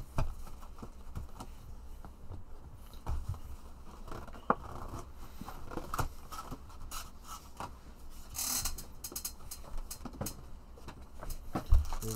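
A cardboard trading-card hobby box being handled and opened: scattered clicks, taps and scrapes of cardboard. About two-thirds of the way through comes a short rustle as the lid and packs are moved.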